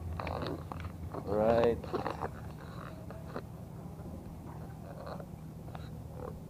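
Steady low machinery hum of the ferry Reina Olympia, with voices talking over it, loudest about a second and a half in.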